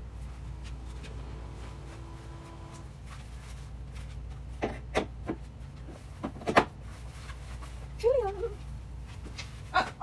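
Hard plastic knocks and clicks as mannequin parts are handled while a jacket is fitted, a few spaced over a couple of seconds around the middle, over a steady low hum. Near the end comes a short whine that bends in pitch.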